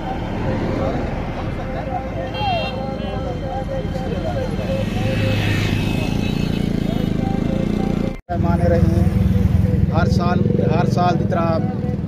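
Men's voices talking over steady road traffic, with motorcycles and other vehicles passing and a louder pass swelling and fading around the middle. The sound drops out for an instant about eight seconds in, then closer speech follows.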